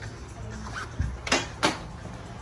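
Quiet background music, then a soft bump about a second in and two short, loud scrapes of handling noise from the phone brushing against a jacket sleeve.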